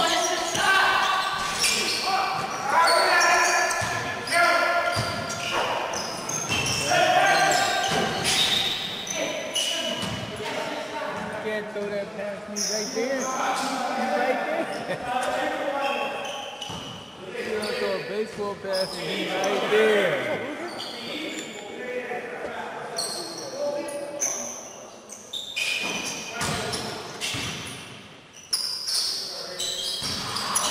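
A basketball bouncing on a gym court, with many separate thuds scattered through the play. Players' voices call out indistinctly over them, and the sound echoes in the large hall.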